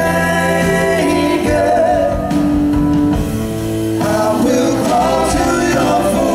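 Live rock band: electric guitar and bass playing under several voices singing together in held notes.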